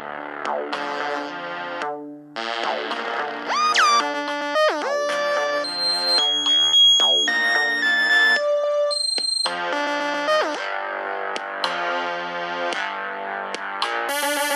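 Synthesizer and keyboard music made in GarageBand: chords and short notes, with swooping pitch bends about four seconds in and again about ten seconds in, and held high notes in between.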